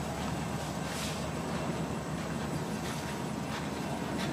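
Freight train of autorack cars rolling past a grade crossing: a steady noise of steel wheels on the rails.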